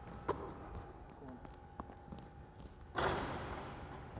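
Quiet gym with a faint steady hum and two short knocks about a second and a half apart from basketball play on the hardwood court; a louder rush of sound comes in near the end.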